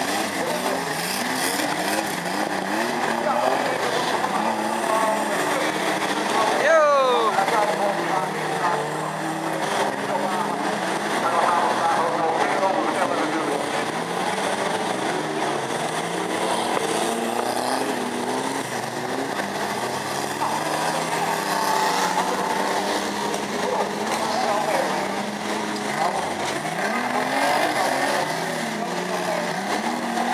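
Several banger racing cars' engines running and revving together as the pack circles a dirt oval, their pitches rising and falling over one another. A short high squeal falls sharply in pitch about seven seconds in.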